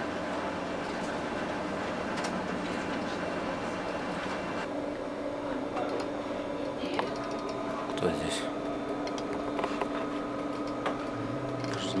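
Steady hum and whir of office equipment such as computers and printers, with a constant low tone; the hiss in the background changes about five seconds in.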